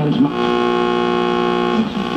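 Music from an AM station coming through the speaker of a 1965 Chevrolet full-size Delco AM-FM radio under bench test: one steady held chord lasting about a second and a half, stopping just before the end.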